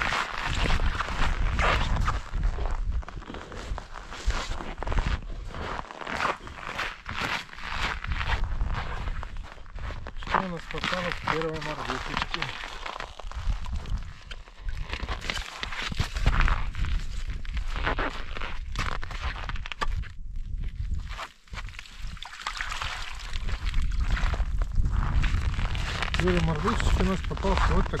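Crunching and knocking of broken ice and slush as a collapsible mesh fish trap is hooked up through a hole in the ice with a pole and hauled out onto the ice.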